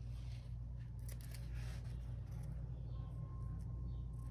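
Scissors snipping through a thin paper strip in a few faint, separate cuts, over a steady low hum.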